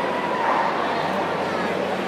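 A dog barking over the steady chatter of a crowd in a large hall.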